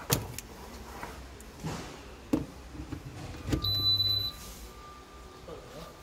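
A single steady high-pitched electronic beep, lasting under a second, from the air fryer oven's control panel about three and a half seconds in, as the unit powers up after being plugged in. A sharp click comes near the start, with faint handling noises between.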